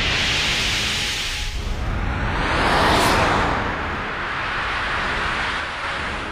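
A cartoon sound effect: a loud, sustained rushing noise that swells about three seconds in and then eases off.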